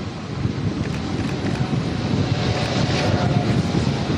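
Outdoor wind buffeting the microphone on an airport apron: a steady rushing roar that grows a little louder over the first second and then holds.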